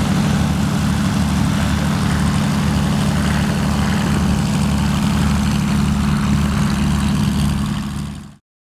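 Britten-Norman Islander twin-propeller aircraft taxiing, its engine and propellers running with a steady low note that fades out near the end.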